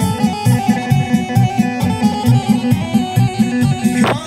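Live band playing instrumental kolo folk dance music through loudspeakers: plucked-string and keyboard melody over a pulsing bass line and a steady fast drum beat.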